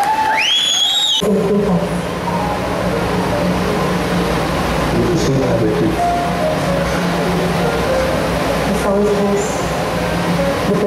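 Film soundtrack playing through a hall's loudspeakers: dialogue between a man and a woman over a steady low hum. The hum and dialogue cut in suddenly about a second in, after a few rising whistle-like tones.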